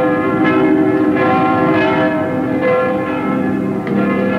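Church bells pealing: several bells are struck in turn, about one strike every half second to a second, and their ringing overlaps.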